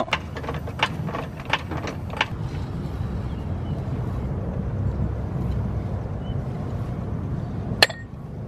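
A few light metallic clinks, then a steady low rumble as a Dayton wire wheel is spun by hand on its hub while its knock-off spinner is backed off, ending with one sharp click.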